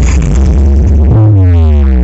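Very loud electronic dance-style music played through a huge outdoor rig of stacked subwoofers, dominated by deep bass. About a second in, a tone sweeps steadily downward in pitch over the bass.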